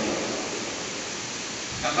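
Steady hiss of background room noise in a large church, with a man's voice resuming near the end.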